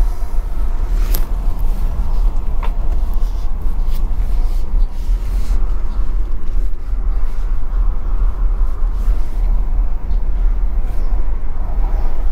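Steady low road and tyre rumble inside the cabin of a Tesla Model Y climbing a steep lane, with no engine note. A couple of faint clicks come in the first few seconds.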